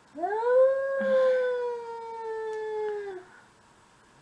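A cat's long, loud yowl of about three seconds, rising sharply at the start and then held with a slowly falling pitch: a territorial threat call at a rival cat.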